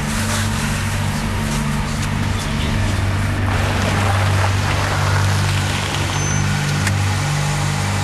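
A car engine running steadily with road noise, as a car pulls up and stops.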